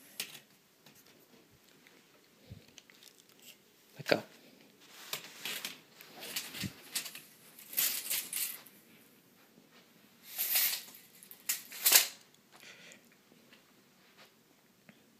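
Intermittent rustling and scuffing of handling: hands, a blanket and a plastic tape measure being moved about. There are several short brushes, the loudest about three quarters of the way through and shortly before the end.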